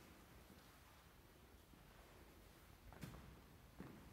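Near silence: room tone, with two faint short knocks near the end.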